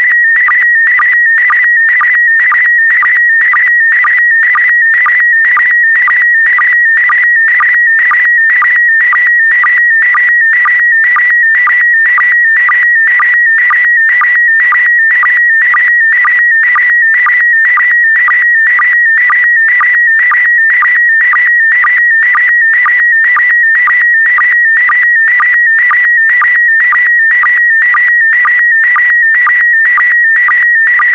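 Slow-scan television (SSTV) signal in PD120 mode transmitting an image: a warbling tone near 2 kHz, broken by line-sync pulses about twice a second.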